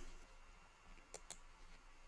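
Two quick, faint computer mouse clicks a little over a second in, over near-silent room tone.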